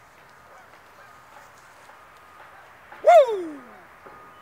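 A single loud call about three seconds in, falling steeply in pitch and fading within a second, over a faint steady outdoor background.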